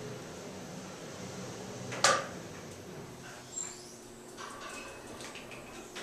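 Elevator car ride heard from inside the car, with a steady hum. A single sharp knock rings briefly about two seconds in. From about halfway on come a few lighter clicks and faint tones as the car comes in to its landing.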